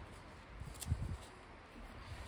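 Faint handling sounds of a torn strip of duct tape being held and moved, with a light tick and a couple of soft knocks about a second in.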